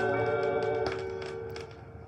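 A 1960s Swedish gospel song recording: a held chord sounds and dies away about a second and a half in, leaving a short, quieter lull between phrases.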